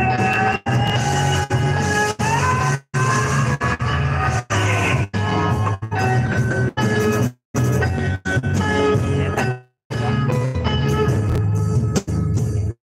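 Live band music on stage, with sustained melody notes gliding in pitch over a steady low bass. The sound drops out completely for short moments about a dozen times.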